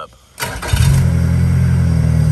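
Yamaha F115 four-stroke, four-cylinder outboard engine being started: about half a second in it cranks briefly on the electric starter, catches almost at once and settles into a steady idle.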